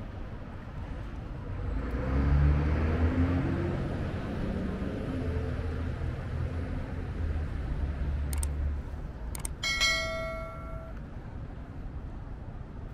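A vehicle passes close by, its low rumble swelling from about two seconds in and rising in pitch before fading. Near the end comes a short, steady beep lasting about a second.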